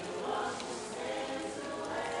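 A choir of many voices singing in harmony, holding long notes.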